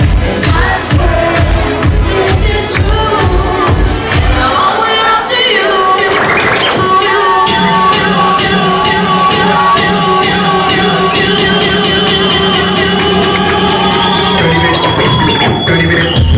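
Loud electronic dance music on a nightclub sound system. A steady kick drum beats about twice a second, then drops out about four seconds in for a breakdown of held synth tones with a rising sweep. The beat comes back at the very end.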